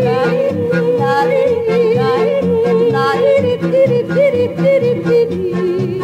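Music: male voices yodeling a wordless refrain, one holding a wavering note while a melody leaps above it, over an acoustic accompaniment with a steady bass beat.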